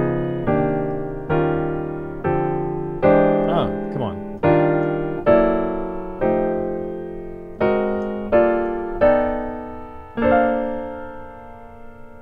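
Digital piano playing a slow run of block seventh chords, about one a second, each left to ring and fade. The chords walk up the diatonic sevenths of B-flat major with a tritone-substitute dominant a half step above each target (B♭maj7, D♭7, Cm7, E♭7, Dm7, E7, E♭maj7, G♭7, F7, A♭7, Gm7, B7). The run resolves on a held B-flat major seventh chord near the end.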